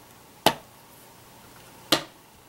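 Two sharp taps, about a second and a half apart, from a wood-mounted rubber stamp being knocked down against paper on a tabletop.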